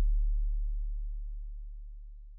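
A single deep sub-bass note from a trap beat, an 808 bass tail, held at one pitch and dying away steadily as the track ends.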